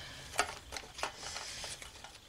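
Faint handling sounds of sticker sheets and small embellishments being moved about in a metal tin: a light rustle with a couple of small ticks, one just under half a second in and one about a second in.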